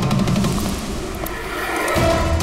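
Dramatic background score with sustained tones.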